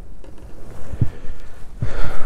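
Low wind rumble on the microphone with two dull thumps, one about a second in and one near the end, as a largemouth bass is landed by hand over the side of a bass boat.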